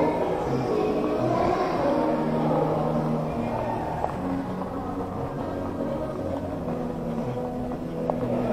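Background pop music playing over a sound system, with held bass notes that change every second or so, and faint voices under it.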